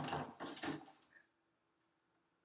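A plastic Brita water-filter bottle being set onto a refrigerator shelf, with a short scraping, knocking clatter as it slides in among the other items, lasting under a second. A faint steady hum follows.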